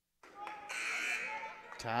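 Silence, then gym sound cutting in, and the scoreboard horn sounding once for about a second, the signal that the timeout is over.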